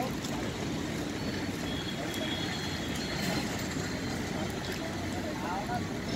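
Steady low outdoor rumble, with faint voices of people nearby, one heard briefly near the end.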